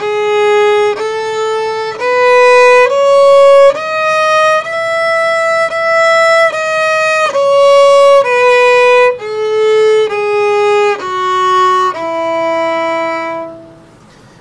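Violin playing an E major scale on the D string, one bowed note roughly every second: it climbs to the top E, holds it for about two bows, then steps back down to a long held low E that stops shortly before the end. The scale uses the high finger pattern, with third finger placed high for G sharp.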